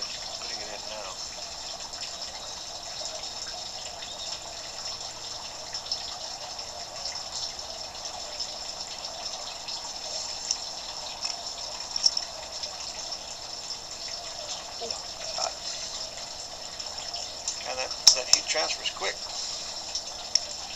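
Water running steadily in a backyard pond, a continuous hiss. A few sharp clicks or knocks stand out near the end.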